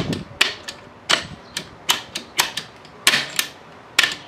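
About a dozen sharp, irregular metal clicks and clacks from the exposed gearshift mechanism of an Apollo RFZ 125cc pit bike, as the shifter is worked by hand. The shift drum's star wheel is binding and will not index into first gear, a sign of damage inside the transmission.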